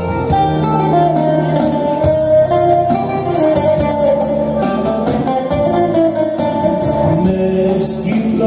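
Live Greek folk music: a laouto plays a running plucked melody over sustained keyboard accompaniment, with no words sung.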